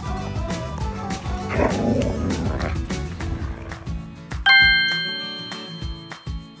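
Background music with a steady beat. About a second and a half in, a dog makes a short, rough vocal sound over it. About four and a half seconds in, a bright chime rings out and slowly fades.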